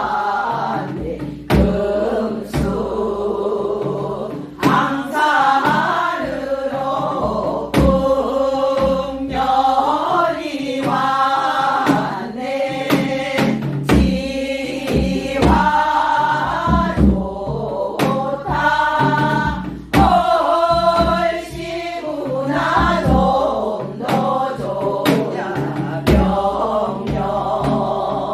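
A woman singing a Gyeonggi minyo (Korean folk song) while accompanying herself on a janggu, the hourglass drum, whose strokes fall as sharp knocks roughly once a second under the melismatic vocal line.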